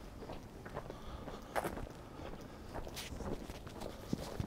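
Footsteps of a person walking on a paved street: a run of soft, short steps over faint street background.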